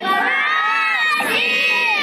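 A group of young children shouting and cheering together in long drawn-out calls: one shout breaks off about a second in and a second one follows at once.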